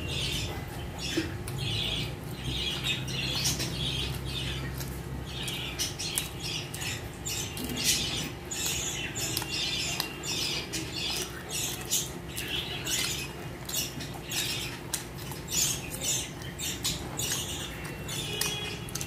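Close-miked chewing and lip-smacking of a person eating tandoori roti and chicken curry by hand: irregular wet mouth clicks and smacks, several a second.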